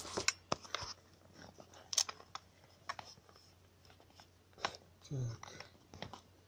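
Plastic clicks and knocks of a smartphone being fitted into a tripod mount: a quick run of sharp clicks in the first second, then single clicks about two seconds in and again near five seconds.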